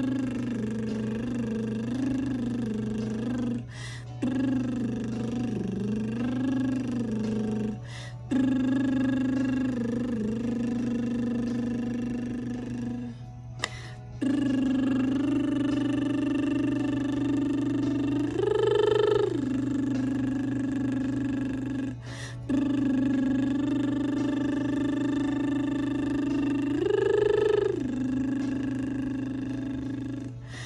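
A woman's closed-lip vocal warm-up: long held notes of several seconds each, with short breaks for breath between them. Early notes waver in pitch, and twice later on the pitch swells up and back down.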